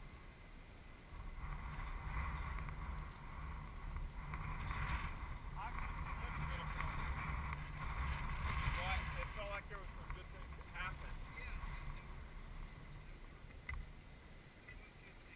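Wind buffeting the microphone of a camera set on the ground, a low rumble that picks up about a second in and gusts unevenly.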